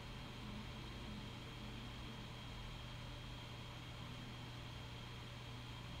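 Faint steady room tone: a low hum and a thin hiss, with no other sound.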